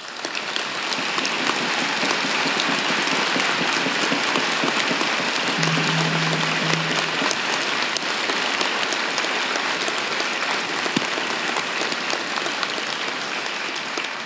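Large audience applauding in a big hall: the clapping swells within the first second or two, holds steady, and starts to fade near the end. A short low steady tone sounds through it for about a second and a half midway.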